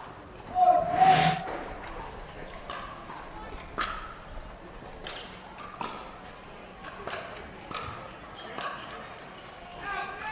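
A loud whoosh with a brief tone as a broadcast transition graphic sweeps across. It is followed by a pickleball rally: sharp pops of paddles striking the plastic ball, roughly one a second, from about three seconds in.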